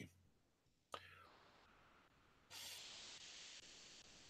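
Near silence: a single faint click about a second in, then a faint steady hiss that grows slightly louder about halfway through.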